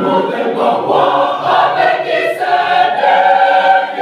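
Mixed choir of men's and women's voices singing unaccompanied in harmony, settling into a long held chord near the end.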